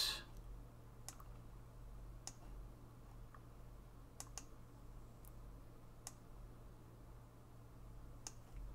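Computer mouse clicking, about six faint, separate clicks spread over several seconds, over a low steady hum.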